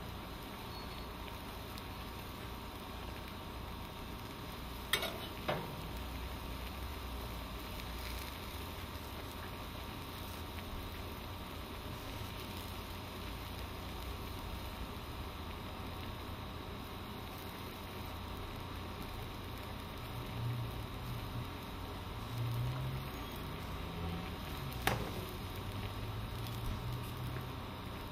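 Vegetables and sauce sizzling steadily in a wok, with a few sharp clicks of the spatula striking the pan: two about five seconds in and one near the end.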